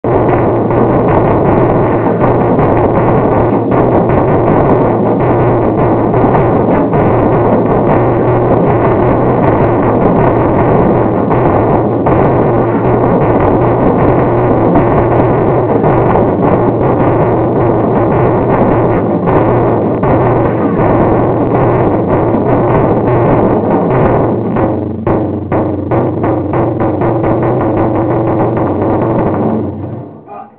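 Taiko ensemble drumming on drums of several sizes, including a large o-daiko, in a dense, continuous wall of strikes. About 25 seconds in, the playing breaks into separate, spaced hits, and it winds down near the end.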